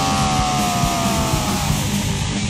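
Anarcho-punk band recording: loud distorted guitar and drums, with one long held note that slides slightly down in pitch and fades near the end.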